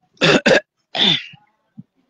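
A person clearing their throat and coughing: two sharp coughs in quick succession, then a third, longer one that falls in pitch.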